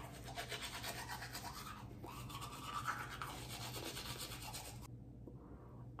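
Manual toothbrush scrubbing teeth in quick, repeated back-and-forth strokes, faint, stopping about five seconds in.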